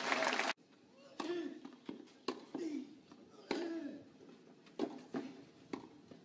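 Spectators clapping after a tennis point, cut off abruptly about half a second in. Then scattered voices and a few sharp knocks while play is stopped between points.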